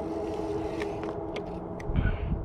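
Jetson Bolt Pro folding electric bike riding along a concrete sidewalk: its motor whines steadily and fades out about a second in, over the rumble of tyres and wind. A few light clicks, and a thump at the very end.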